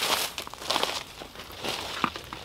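Hiking boots walking through dry fallen leaves on the forest floor: three crunching, rustling steps passing close by.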